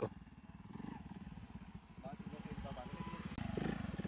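Honda CD70's small single-cylinder four-stroke engine running at low speed, its low pulsing note growing louder toward the end as the bike comes close.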